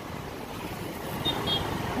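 Steady, low hum of motorbike and scooter traffic and road noise, heard while riding among them across a steel truss bridge.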